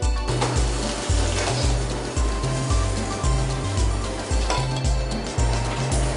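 Background music with a steady bass beat, about two pulses a second.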